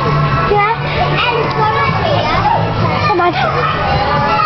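Many children's voices shouting and squealing at once, over loud background music with a steady low bass.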